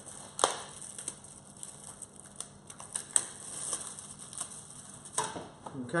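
Plastic wrapping crinkling and kitchen foil rustling as frozen fish fillets are unwrapped and laid on a foil-lined baking tray: a run of small irregular crackles and clicks, with a few sharper ones.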